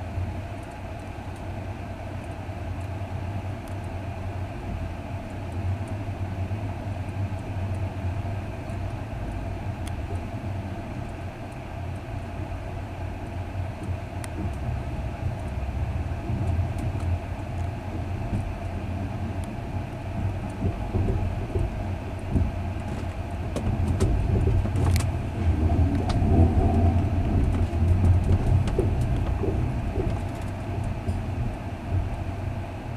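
Night train rolling, heard from inside a couchette car: a steady low rumble of wheels on rail with a constant hum, growing louder in the last few seconds as the train gathers speed. A single sharp click about 25 seconds in.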